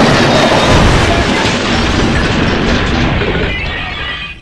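A sudden, very loud blast of harsh, distorted noise used as a meme sound effect. It starts abruptly, holds with a slight fade, and stops dead shortly after.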